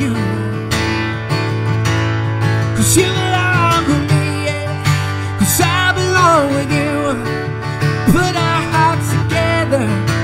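Acoustic guitar strummed steadily, with a male voice singing drawn-out melodic phrases over it in three stretches.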